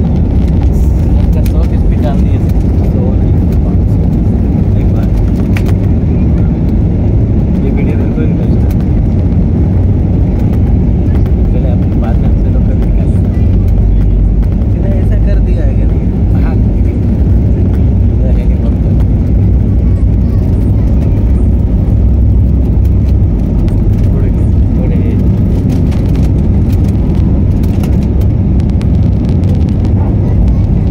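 Airbus A320-family jet airliner's engines at takeoff power heard from inside the cabin: a loud, steady, deep rumble through the takeoff roll, with the aircraft lifting off near the end.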